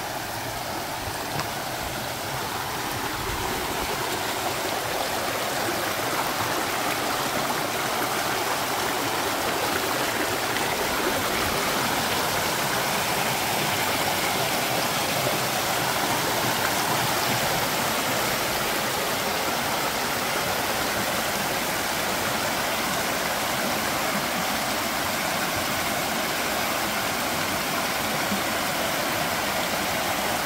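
Small mountain stream rushing over rocks and down little cascades: a steady rush of water that grows a little louder over the first few seconds, then holds.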